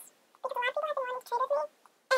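A very high-pitched voice in short, quick syllables, starting about half a second in, in the manner of a sped-up or chipmunk-style vocal.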